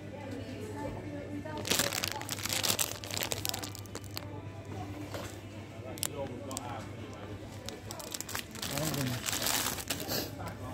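Plastic sweet packet crinkling as it is handled, loudest in a burst about two seconds in and again near the end, with lighter crackles between. A steady low hum runs underneath.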